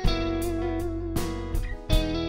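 Live country band playing an instrumental passage: electric guitar holding sustained notes over bass and drums, with drum hits at the start, about a second in and near the end.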